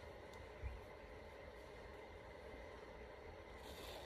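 Near silence: faint room tone, with a single soft low bump a little over half a second in and a faint rustle near the end.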